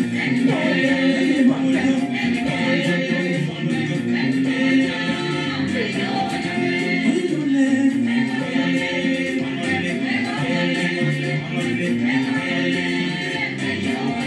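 Gospel praise song with group vocals, sung in Bassa, playing continuously at a steady level.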